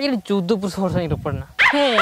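A voice giving a quick run of short pitched calls, about three a second, followed near the end by higher calls falling in pitch.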